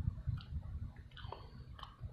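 A person chewing French fries topped with salted egg yolk sauce: soft, irregular chewing, a few strokes a second, with faint mouth clicks.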